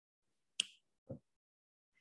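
A quiet pause holding a single sharp click a little over half a second in, followed about half a second later by a short, low sound.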